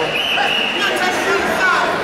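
Referee's whistle, one long steady blast that cuts off a little under a second in, stopping the wrestling for a stalemate, over the chatter of a gym crowd.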